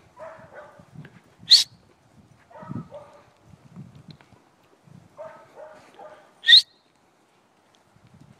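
A herding dog gives two short, sharp, high yips, about a second and a half in and again at about six and a half seconds. Softer, lower sounds fill the gaps between them.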